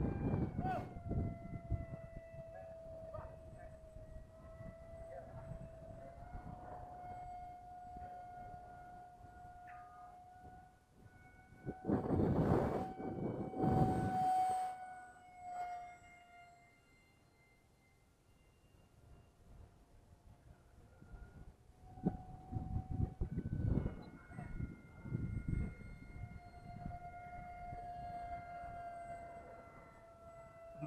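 Electric motor of a foam RC Sukhoi Su-35 parkjet in flight: a steady high whine that wavers slightly in pitch with throttle, fades almost away around the middle and comes back. Gusts of wind buffet the microphone about twelve seconds in and again a few times later.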